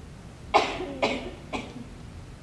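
A person coughing three times in quick succession, about half a second apart, the first cough the loudest.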